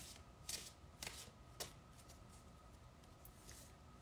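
Deck of oracle cards being shuffled by hand: four faint, short card slaps in the first second and a half, then near quiet.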